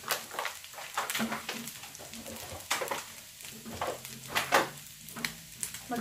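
Food frying in a pan on a gas hob: a steady sizzle with frequent irregular sharp crackles and pops of spitting oil.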